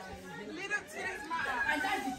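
Quiet background chatter: several people talking at once, with no one speaking up close.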